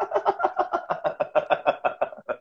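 A man laughing: a long, rapid run of short pitched 'ha' pulses, about eight a second.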